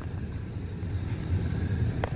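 Car engine running, a steady low rumble heard from inside the cabin.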